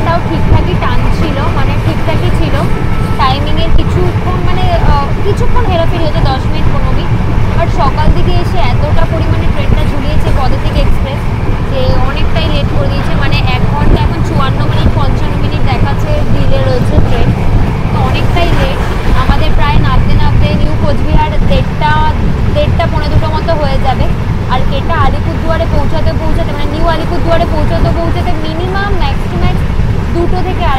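Steady rumble of a moving Indian Railways sleeper-class coach heard from inside, with indistinct voices over it.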